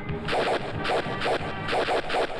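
Film fight-scene hit sound effects: a quick run of sharp whacks and crashes, about three a second, over the background score.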